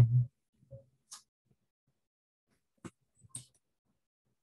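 A few faint, short clicks spread over a few seconds, with near silence between them: a computer mouse being clicked while a screen to share is picked.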